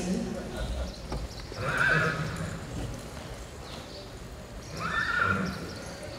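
A horse whinnying twice, about three seconds apart, each call under a second long.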